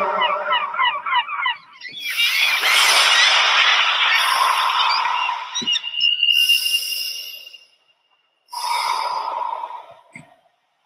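A flock of seabirds calling, many short cries overlapping. From about two seconds in they sit over a loud rushing noise that breaks off suddenly about eight seconds in, followed by a shorter burst of the same.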